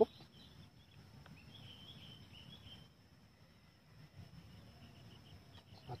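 Faint, quiet field background: a bird chirping softly over a steady, high-pitched insect drone, with one small click about a second in.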